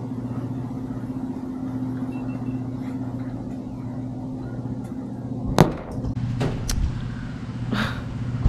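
A steady low mechanical hum, with a few sharp clicks or knocks in the second half, the loudest about five and a half seconds in.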